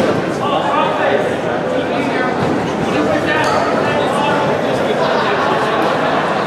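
Crowd of spectators talking and calling out, several voices overlapping, in a large echoing gym hall.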